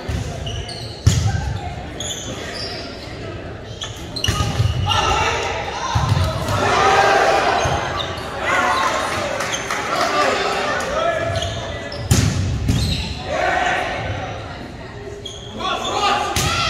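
Volleyball rally in a large gymnasium: the ball is struck hard about a second in and again around twelve seconds, with further duller hits between. Players and spectators shout during the play.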